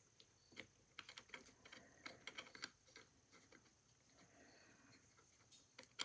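Near silence broken by faint, quick light clicks and ticks of small metal parts being handled, mostly in the first half, as the governor shaft of a Cheney phonograph motor is worked loose.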